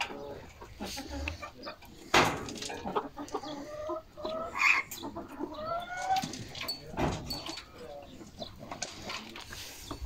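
Domestic hens clucking in short scattered calls, with a few sharp knocks among them, the loudest about two seconds in and at seven seconds.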